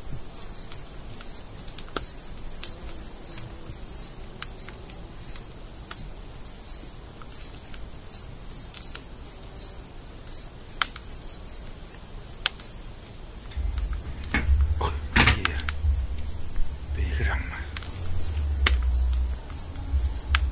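Crickets chirping at night: a steady run of short high chirps, a few a second, over a constant high insect drone. From about two-thirds of the way in, a low rumble on the microphone and a few sharp clicks join it.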